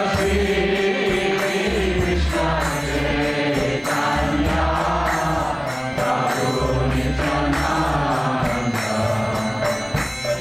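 Group kirtan: a roomful of devotees chanting a mantra together to a melody, with small hand cymbals and a drum keeping a steady beat.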